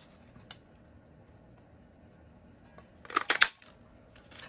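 Handheld paper punch (Stampin' Up! Labeled With Love punch) clacking down through cardstock: a quick cluster of sharp, loud clicks near the end, after a faint click about half a second in.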